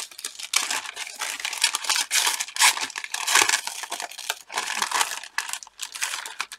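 Thin tissue paper being crinkled and torn by hands unwrapping a parcel: an irregular run of rustles and rips with no steady rhythm.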